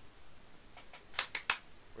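A quick run of about five sharp clicks and taps, starting about a second in and over within a second.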